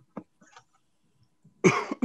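A person clearing their throat with a short cough about a second and a half in, running straight into the start of speech. Before it there are only a few faint ticks and a breath.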